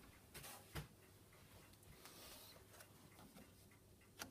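Near silence, with a few faint clicks; the loudest is a small knock just under a second in.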